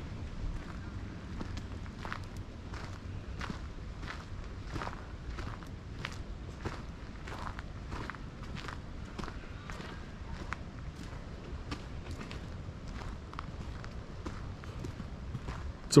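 Footsteps walking on a dirt forest trail strewn with leaves, an even pace of about three steps every two seconds, over a low steady rumble.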